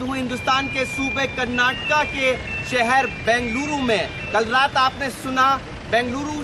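Mostly speech: a man talking over road traffic noise. A high, steady beep-like tone runs under the voice for about the first three seconds.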